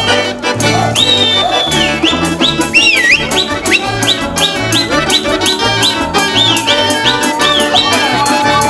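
Russian folk instrumental ensemble playing a lively tune: balalaikas strummed in a quick, even rhythm over a bass balalaika and a button accordion, with a small folk pipe playing high, swooping, sliding notes on top.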